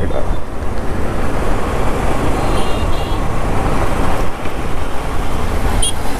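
Motorcycle riding noise: wind rushing over the microphone with the engine and road noise underneath, steady and loud, amid passing traffic.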